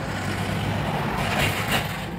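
Steady rumble and hiss of a passing motor vehicle, swelling about a second and a half in.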